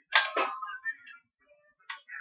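Metal gym weights clanking together once, sharply, with a short ringing after, then a fainter click near the end.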